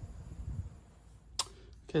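A single sharp click a little past halfway, over a faint low rumble in the first second.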